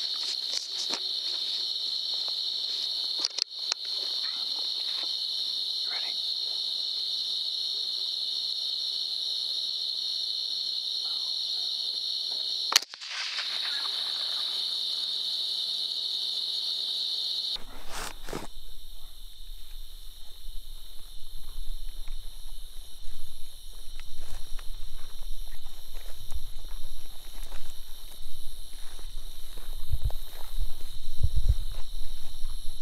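A steady high-pitched chorus of night insects, with a single sharp rifle shot about 13 seconds in. After a cut the insect sound drops away, and irregular footsteps through grass and brush take over.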